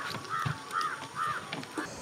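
A crow cawing four times in quick succession, evenly spaced.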